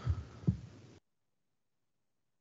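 Two short low thumps about half a second apart, then the sound cuts out completely about a second in: a conference-table microphone being switched off after the speaker finishes.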